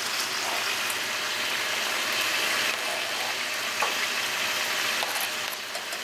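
Steaks sizzling as they cook: a steady hiss with a few faint ticks.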